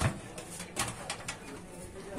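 Clicks and rustles of power-supply cables and their plastic connectors being handled inside a steel PC case, a few sharp clicks spread through the moment, the strongest at the very start.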